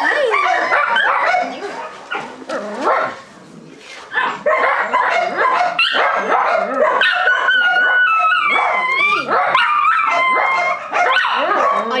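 A German Shepherd-type puppy crying out again and again in high, wavering yelps and whines, with a brief lull about three seconds in.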